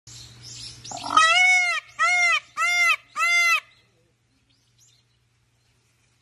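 Male Indian peafowl calling: four loud wailing calls in quick succession, each rising and falling in pitch, after a fainter hiss in the first second.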